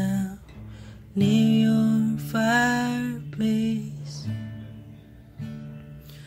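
A slow ballad on strummed acoustic guitar, with a singer holding long notes about a second in, then the accompaniment quietening near the end.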